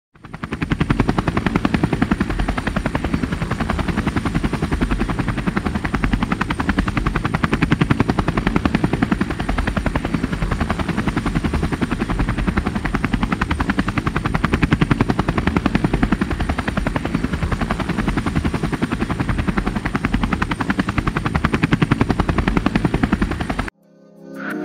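Helicopter rotor beating fast and steadily, cutting off suddenly just before the end.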